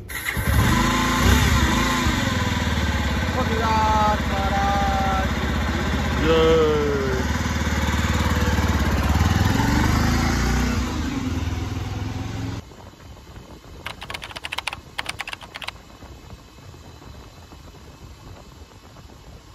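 Motorcycle engine running as two riders set off, with people's voices over it. The sound cuts off suddenly about twelve seconds in, leaving a quieter background with a short spell of rapid crackling noise a little later.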